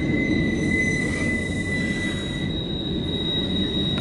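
CSX mixed freight train rolling past with a steady rumble, its wheels squealing on the curved track of the wye in thin, high, steady tones; the lower squeal fades out about halfway through while a higher one carries on.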